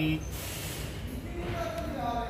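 Mostly speech: a drawn-out spoken word ends just after the start, then after a short lull a faint voice comes back in the second half, over low steady background noise.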